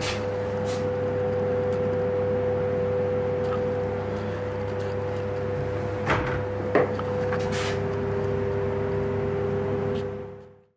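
A floating vanity drawer being pushed shut, with two short knocks about six seconds in, over a steady two-tone hum.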